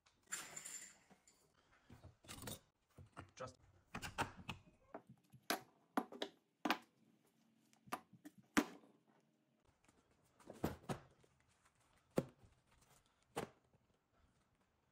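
Hand tools and small items being set down and handled on a plywood workbench: irregular sharp clacks and knocks, about a dozen, with a short rustle in the first second.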